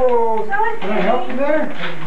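High-pitched voices talking and exclaiming, the words unclear.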